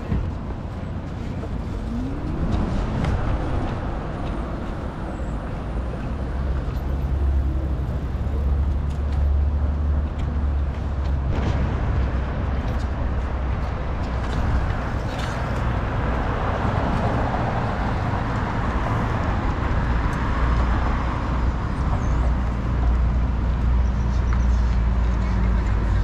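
City street traffic: vehicle engines running and passing with a steady low rumble. One engine's pitch rises about two seconds in.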